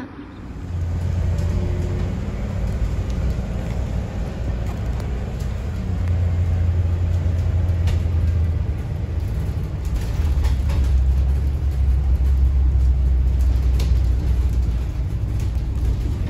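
Cabin rumble of a small shuttle bus on the move: steady engine and road noise, low and loud, that shifts in level a couple of times, with a few light rattles.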